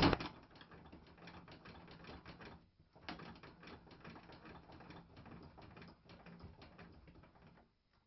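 Homemade blade-lifting mechanism of a table saw being cranked by hand. The lead screw turns in its nut and the blade rises, giving a faint, rapid, irregular run of small clicks and ticks. The clicking breaks off briefly about two and a half seconds in and stops shortly before the end.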